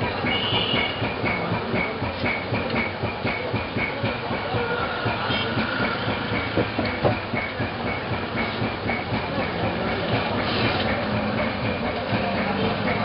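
A steady noisy din with a light, regular knocking about three times a second.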